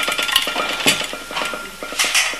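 Tableware being handled on a dining table: ceramic serving dishes and cutlery clinking and scraping in a quick run of small knocks and clicks, with a faint ring from the china.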